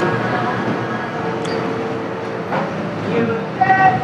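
A motor vehicle passing, a steady rumble throughout, with low voices near the end.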